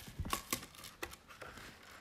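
Paper being shifted and handled on a table: a few light taps and rustles.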